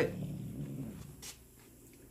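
A domestic cat growling low, a rough rumble lasting about a second and a half before it fades out. It is a warning growl, set off by another cat provoking him.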